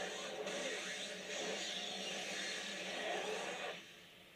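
Soundtrack of an anime episode: a dense, steady mix of score and action effects, which cuts off abruptly just before the end as playback stops.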